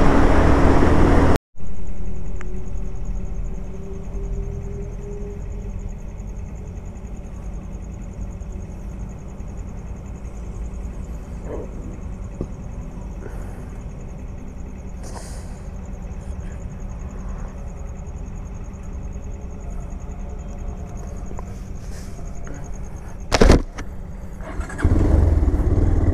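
Motorcycle riding noise that cuts off abruptly after a second and a half, giving way to the bike's engine idling at a stop with a low, steady rumble. A single sharp knock comes near the end, and loud riding noise starts again shortly after.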